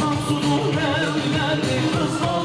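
Live wedding band playing a Turkish folk dance tune (oyun havası) with singing, over a continuous beat.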